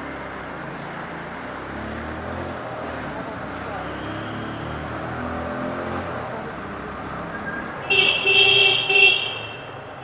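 Motorcycle engine running with traffic noise while riding through a road tunnel, then a vehicle horn honks loudly in a few short blasts about eight seconds in.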